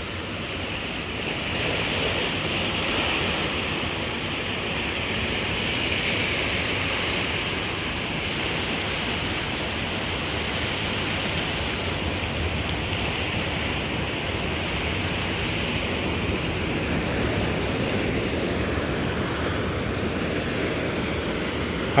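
Sea surf washing up and breaking on a sand beach: a steady rushing wash that swells a little every few seconds as each wave comes in. These are the waves that are eating away the shoreline.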